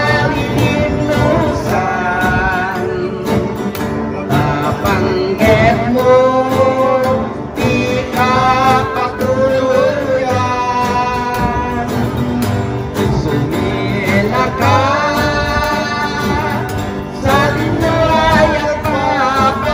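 Male voices singing a slow song with long held notes that waver in pitch, over strummed acoustic guitars.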